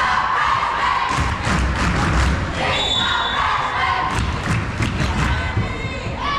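Volleyball rally in a school gym: repeated thuds of the ball being struck and hitting the hardwood floor, over continuous crowd and player voices calling out.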